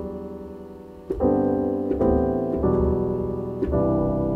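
Software piano patch in Ableton Live played from a MIDI keyboard in sustained chords. A held chord fades, then new chords are struck about a second in, at two seconds, shortly after, and near the end.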